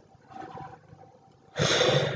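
A person's loud, breathy intake of air close to the microphone near the end, after a fainter breath about half a second in.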